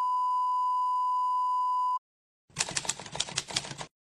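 Steady high-pitched test-tone beep sounding with television colour bars, cutting off sharply about two seconds in. Half a second later comes a quick run of typewriter key clacks lasting just over a second: the sound effect for caption text being typed out on screen.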